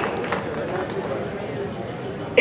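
Steady outdoor background noise of a gathering, with a low hum and faint voices in the background.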